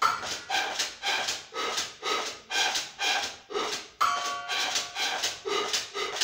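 Beatboxing into a microphone cupped against the mouth: rhythmic breathy vocal percussion, about two hits a second, with a short pitched tone about four seconds in.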